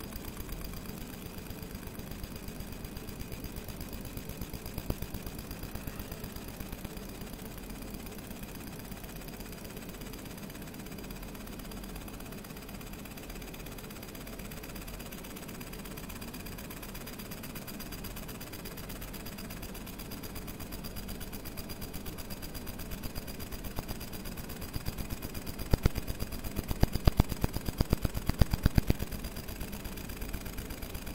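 A 50 W JPT MOPA fiber laser marker engraving a photo into a mirror-finish metal tag: a steady machine hum with a faint high whine, and the pulsed beam ticking on the metal. The ticking turns into loud, dense crackling over the last few seconds.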